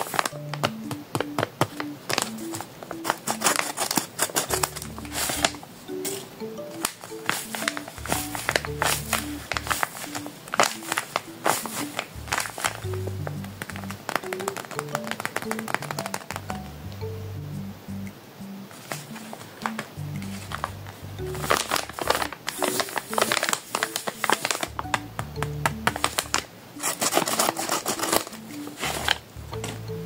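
Crinkling and crackling of a homemade paper blind bag and tape-covered paper squishies being handled and squeezed, over background music with a stepping melody. The crinkling thins out for a few seconds about halfway through.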